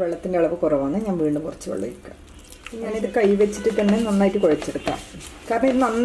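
A woman talking in three short stretches, with faint scraping and stirring of flour dough being mixed in a plastic bowl underneath.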